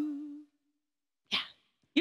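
A woman's sung note, the last syllable of a phrase, held steady and fading out within the first half second. Then a pause, a short breathy sound about a second later, and a voice sliding down in pitch just at the end.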